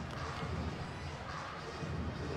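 Steady, low background din of an indoor sports arena, a faint murmur with no single distinct event.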